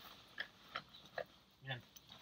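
Faint handling sounds of gear being pushed into a trekking backpack: a few short rustles and clicks, spaced under half a second apart.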